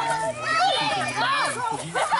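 Many children's and adults' voices shouting and cheering at once, overlapping and high-pitched.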